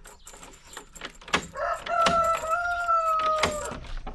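A rooster crows once: one long, slightly falling call of about two seconds that starts a little before the middle. Sharp metallic clicks and a rattle come from a door's latch being worked by hand.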